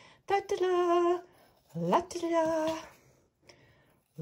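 A woman's voice holding two long wordless notes, each about a second long, the second sliding up into its pitch.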